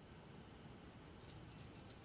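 Faint, light jingle of a thin metal necklace chain being handed over, starting about a second in.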